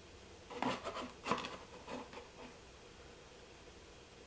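Fingers pressing into loose seedling soil mix in a small plastic container, making a few soft, short scuffs and crackles in the first half, then quiet.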